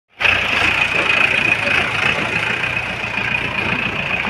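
Mahindra Bolero pickup's engine idling steadily, with a constant high-pitched whine over its low hum.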